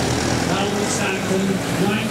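Vintage Ford car's engine running as the car pulls away, with voices in the background.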